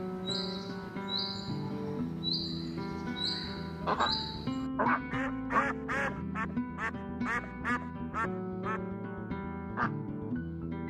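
Domestic ducks quacking in a rapid run, about two or three quacks a second, beginning about four seconds in, over background music.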